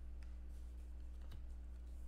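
A few faint clicks and ticks of trading cards being handled by hand, over a steady low hum.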